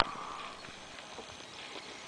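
A sharp click right at the start, then faint background hiss with a few soft ticks.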